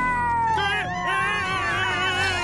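Cartoon cat's long, drawn-out yowl, falling in pitch. About half a second in, a wavering, warbling cry joins it and carries on to the end.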